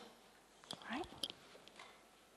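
A woman's voice softly saying one short word about a second in, otherwise a quiet pause with room tone.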